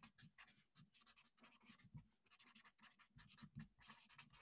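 Felt-tip marker writing on paper: faint, quick, short pen strokes, several a second, as words are hand-lettered.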